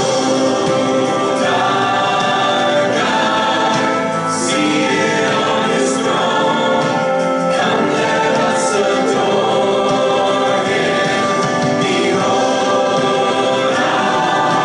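Choir singing slow, held chords over music, the harmony changing every second or two.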